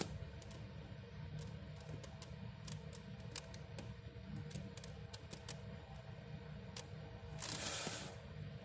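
Faint handling noise: scattered light clicks and rustles as a small flashlight is moved about over the eggs and substrate, over a low steady hum, with a short hiss near the end.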